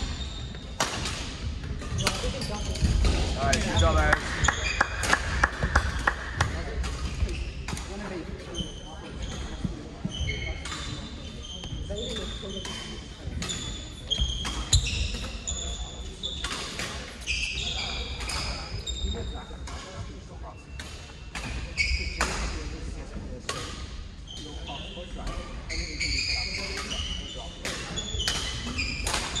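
Badminton shoes squeaking in many short chirps on a wooden court floor, mixed with sharp racket-on-shuttlecock hits and footfalls echoing in a large hall, with background voices.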